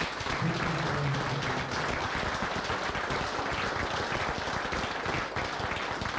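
Audience applause: many people clapping together at a steady level.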